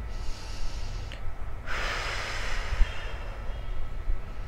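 A woman's long audible breath while holding a deep yogic squat. It starts about two seconds in and fades toward the end, over a low steady rumble.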